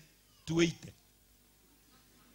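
A single short vocal sound from a person about half a second in, lasting about a quarter of a second, like a brief exclamation.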